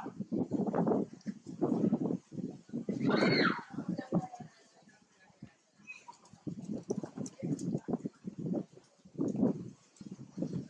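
A bonnet macaque eating a ripe mango: irregular smacking and chewing noises in clusters, with a short high rising-and-falling call about three seconds in.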